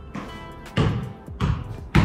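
A football thudding against the feet and bouncing on a tiled floor as it is flicked up and kept in the air: about four dull knocks roughly half a second apart, over background music.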